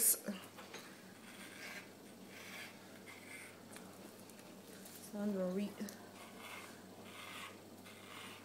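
Electric pet hair clippers running with a steady low hum as they trim the fur on a pet's tail, with faint rustling as the blade passes through the hair. A brief voiced sound comes about five seconds in.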